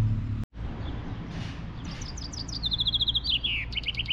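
A songbird singing one phrase: a quick run of short repeated notes stepping down in pitch, ending in a fast downward flourish and a few closing notes, over a steady low rumble.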